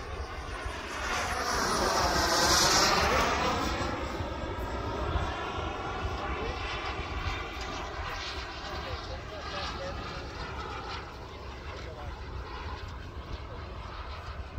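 Radio-controlled model airplane making a fast pass overhead: its engine gets loud about two seconds in, its pitch falling as it goes by, then it runs on more quietly in the distance. Wind rumbles on the microphone.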